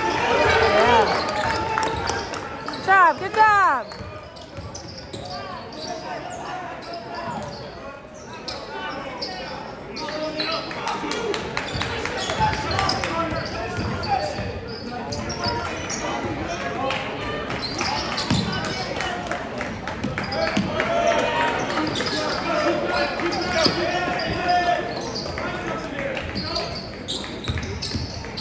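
Basketball game in a large echoing gym: a ball dribbling on the hardwood court and a steady hubbub of spectators' and players' voices. About three seconds in, a cluster of loud, sharp squeaks, the loudest sound here, fits sneakers squeaking on the court.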